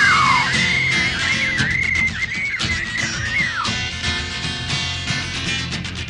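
Rock band instrumental break: a high lead melody wavers and bends in pitch for the first few seconds over bass and a steady drum beat.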